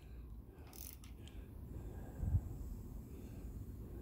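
Faint mechanical clicks from a ring spanner turning a Suzuki GT750 two-stroke triple's crankshaft by hand at the ignition rotor nut, with one low thump about two and a quarter seconds in.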